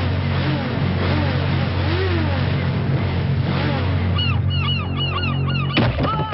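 Action-film background score over a low steady drone, with a fast repeating figure of short swooping high notes coming in about four seconds in. A sharp hit lands just before the end.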